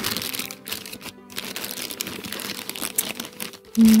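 Plastic packaging and bubble wrap crinkling and crackling as they are handled. The crackles come in a dense run, with a short pause about a second in and another shortly before the end.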